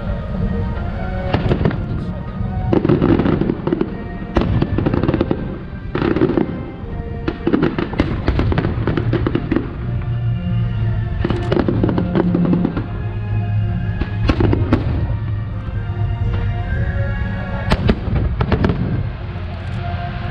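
Aerial fireworks shells bursting in a long irregular series of sharp reports, sometimes several a second, over background music.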